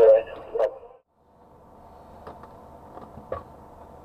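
A man's voice over a two-way radio giving crane directions, ending about a second in; after a brief drop to silence, a faint steady background hum with a few light clicks.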